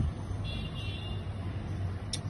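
Steady low background hum, with a faint, brief high-pitched tone about half a second in.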